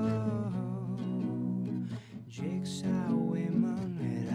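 Acoustic guitar strummed, with a man singing over it; the sound dips briefly about halfway through.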